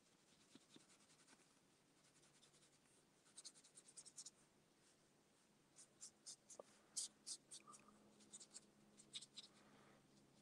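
Faint scratching of a fountain pen nib on paper as quick hatching strokes are drawn: a short run of strokes about three seconds in, then a longer run from about six seconds to nine and a half.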